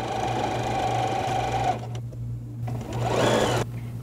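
Electric sewing machine stitching a seam at a steady speed for nearly two seconds. After a short pause comes a second, briefer run.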